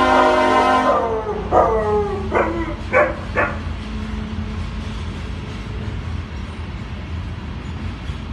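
A dog barks four times, between about one and a half and three and a half seconds in, over the steady low rumble of a freight train. A loud sustained chord of several tones cuts off about a second in.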